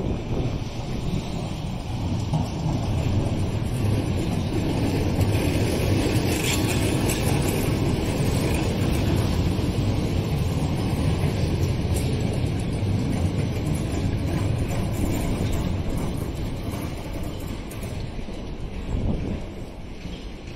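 Southern Class 455 electric multiple unit running along the station tracks: a steady rumble of wheels on rail that swells a few seconds in and fades near the end, with wind on the microphone.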